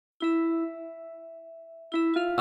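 Opening of a hip-hop beat: one bell-like note struck and left ringing, fading slowly, with the next note struck near the end.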